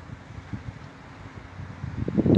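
Low, steady wind rumble on the microphone, with no distinct event.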